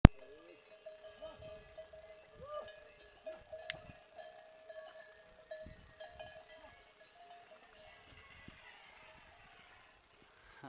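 Bells on a train of passing pack yaks ringing steadily, fading out near the end as the animals move off.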